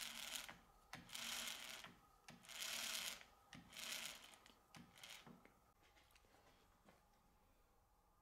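Faint metal rubbing and clicking from a circular saw disc's tapered washers being turned by hand on a drill spindle, setting the disc's wobble angle: four short scraping bursts, then a few small clicks.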